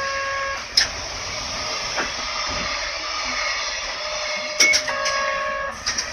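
Isuzu Erga (PDG-LV234N2) city bus standing with its engine running, giving a steady hiss. Electronic beeps sound at the start and again near the end, with a few sharp clicks between.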